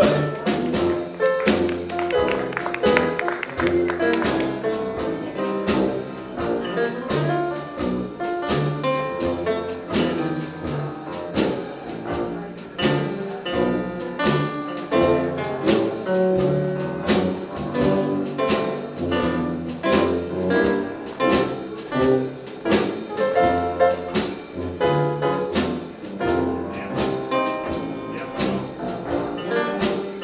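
Live traditional jazz band playing an instrumental chorus of a slow blues, with piano, tuba bass and drum kit keeping a steady beat under the melody.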